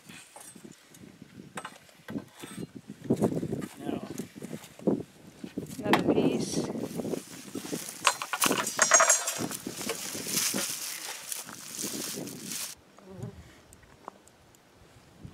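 Knocks and scrapes of lumber and a handsaw being worked on wooden rafters. A longer rasping stretch in the second half stops abruptly near the end.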